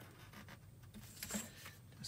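Faint scratching of a craft knife blade drawing through thin card along a steel rule, with a brief louder scrape a little over a second in.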